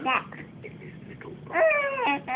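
A baby's short, high-pitched whine about one and a half seconds in, falling slightly in pitch, after a brief vocal sound at the start.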